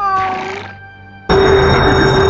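A cartoon big cat's growl: one short call, falling slightly in pitch, over background music. About 1.3 s in, loud dramatic music cuts in abruptly.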